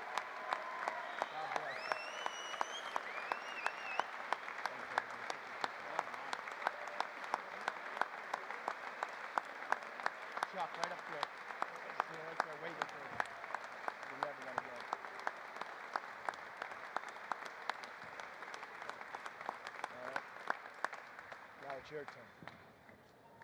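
An audience applauding steadily, with one set of louder, close claps standing out at about two a second. The applause thins out near the end.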